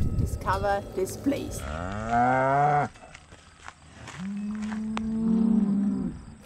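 Cows mooing: one long moo about two seconds in that falls away at its end, then a second, lower, steady moo starting about four seconds in.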